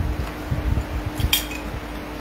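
Handling and movement noise: a few dull knocks and one sharp clink about a second and a half in, over a faint steady hum.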